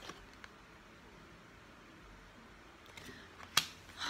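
Tarot cards handled and laid down on a cloth-covered table: faint card rustling with a couple of light clicks, then one sharp snap of a card about three and a half seconds in.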